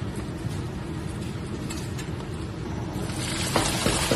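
Starch-dusted small shrimp dropped into hot oil in a wok, the oil bursting into loud sizzling and crackling about three seconds in.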